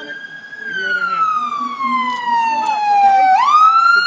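Police car siren wailing: its pitch falls slowly for about three seconds, then swings quickly back up near the end.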